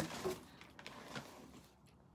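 Faint rustling and a few light knocks of hands rummaging in a cardboard box and lifting out a can, loudest in the first half second.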